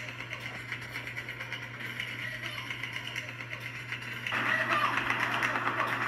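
Audio of a hand-held walk-through video played back through a phone speaker: a steady low hum and noisy, hissy ambience that grows louder about four seconds in. It is presented as holding a muffled woman's voice calling for help.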